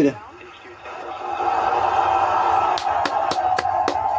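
Crowd cheering and clapping on the webcast's audio, building up about a second in and holding steady, with a few sharp claps or whoops in the second half.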